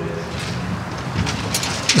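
Steady outdoor background noise in a pause between a man's spoken phrases at a microphone.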